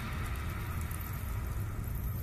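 Low, steady rumble of a fire sound effect: flames burning beneath a bronze cauldron, with a faint hiss above the rumble.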